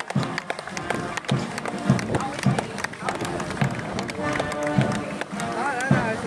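Band music with a beating drum, with voices from the crowd of onlookers over it.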